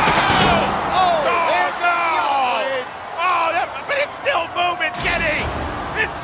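Excited, drawn-out shouting over the first few seconds, then a single heavy impact about five seconds in as the full-body spinner combat robot Gigabyte strikes its opponent.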